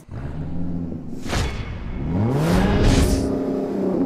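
Car engine revving as a sound effect: it idles at first, a whoosh comes about a second in, then the revs climb steeply over about a second and hold high, with further whooshes.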